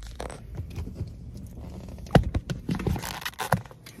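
Handling noises: rustling and scraping with several sharp knocks, the loudest about two seconds in.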